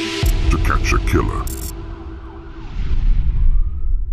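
Cinematic trailer-style sound design: a deep bass rumble comes in suddenly and drones on. A short distorted voice fragment sounds about a second in, and a rushing noise swells up near the end.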